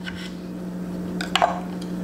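Knife cutting through a lemon on a wooden cutting board and the halves being pulled apart, with a wet squish and a couple of short sharp clicks a little over a second in.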